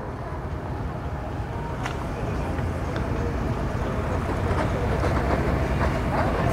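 Boat's outboard motor running at idle: a low, steady rumble that grows slowly louder.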